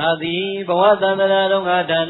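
A Buddhist monk's single male voice chanting in long held tones, rising in pitch partway through, louder than the talk before it.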